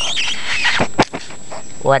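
Six-week-old Newfoundland puppy giving a brief high-pitched squeal at the start, followed by a sharp click about a second in.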